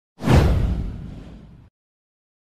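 A whoosh sound effect with a deep boom, hitting sharply just after the start and fading away over about a second and a half before cutting off.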